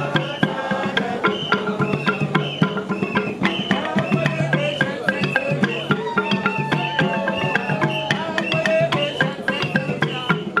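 Balafon (wooden xylophone) played with mallets in a fast, dense run of strokes, over steady hand-drum beats.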